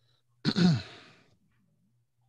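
A person's sigh: a short breathy exhale with voice in it, falling in pitch, about half a second in.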